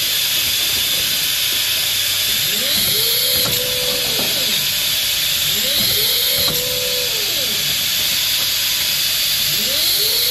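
CIMEC AML bottle filling and capping monoblock running: a steady hiss, with a motor whine that rises, holds and falls three times, about every three seconds, as the star wheel indexes the bottles. A few light mechanical clicks come with the cycles.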